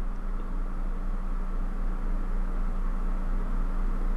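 Steady low machine hum with a faint hiss, holding one unchanging pitch throughout.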